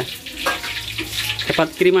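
Hot oil sizzling steadily in a frying pan as food fries, with a man's sing-song voice coming in near the end.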